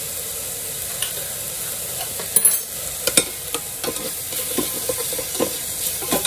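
Chopped tomato and onion frying in oil in a stainless steel pot, with a steady sizzle. From about two seconds in, a metal spoon clinks and scrapes against the pot as the sofrito is stirred.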